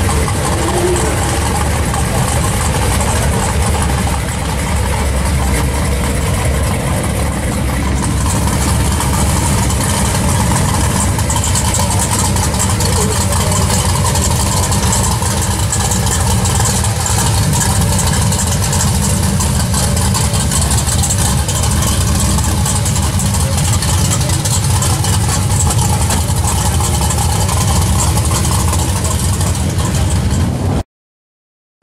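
Chevrolet Chevelle SS V8 idling steadily, heard from close behind at its exhaust.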